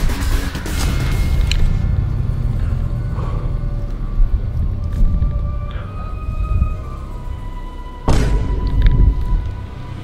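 Suspenseful background music with a deep low bed and held, sliding high notes, and a sudden loud hit about eight seconds in.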